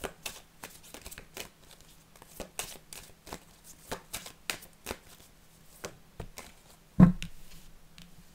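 An oracle card deck being shuffled by hand: a run of quick, irregular card clicks and flicks. About seven seconds in there is a single louder thump.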